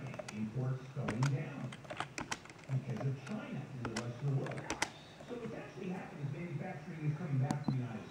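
A low-pitched voice talking indistinctly, with several sharp clicks scattered through it.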